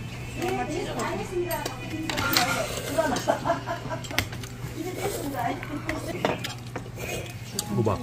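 Metal chopsticks and spoons clicking and scraping against stainless-steel noodle bowls during a meal, with voices talking and a steady low hum underneath.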